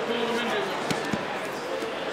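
Two dull thumps of bodies against a grappling mat about a second in, a quarter second apart, as the grapplers break apart, over voices in the room.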